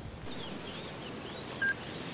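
Faint bird calls, a few quick up-and-down chirps, over a quiet outdoor background in the bush, with one short, clear high note near the end.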